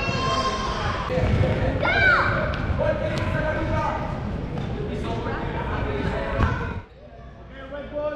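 Soccer balls being kicked and bouncing on a hardwood gym floor, the thuds echoing around a large hall, with young children shouting and squealing over them. Much quieter near the end.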